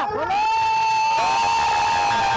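A long, steady high 'aa' note held by a voice in a namkirtan devotional song, with the sound thickening about a second in as more voices or instruments join.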